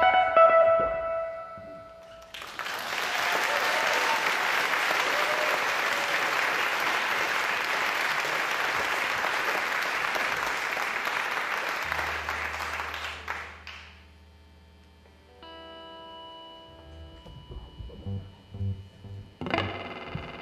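A live band's last chord rings out and fades, then an audience applauds for about eleven seconds. As the applause dies away a low steady tone and sustained pitched notes come in, and effects-laden electric guitar notes start the next song near the end.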